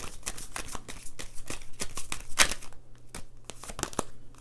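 A deck of oracle cards being shuffled by hand: a quick run of card flicks and rustles, with one louder snap about two and a half seconds in, thinning out near the end.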